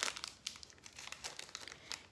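Crinkly plastic candy wrapper of a chocolate peanut butter cup being handled and pulled open, a run of irregular crackles.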